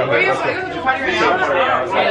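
Several voices talking over one another: indistinct, lively chatter.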